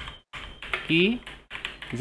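Computer keyboard keys clicking in a run of quick keystrokes as a sentence is typed.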